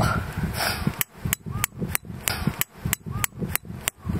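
Camp hammer driving a tent peg into the ground: a quick run of about a dozen sharp strikes, roughly three a second, starting about a second in.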